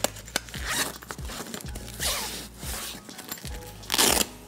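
Zipper on an Oberwerth Richard 2 leather camera bag being pulled in several short runs, the longest about halfway through, over quiet background music.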